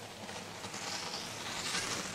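Skis carving across packed snow on a giant slalom course: a hissing scrape that swells as the racer sweeps past close by and is loudest near the end.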